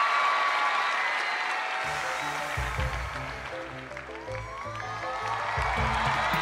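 Studio audience clapping and cheering, with a song's instrumental intro starting underneath; a bass line comes in about two seconds in and the music builds.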